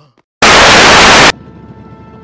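A very loud burst of white-noise static, about a second long, starting about half a second in and cutting off suddenly. After it, a faint steady background holding a few held tones.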